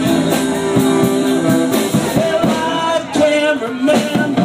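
Live rock and roll band playing: a tenor saxophone holding long notes over a drum kit's steady beat and acoustic guitar, with a voice singing.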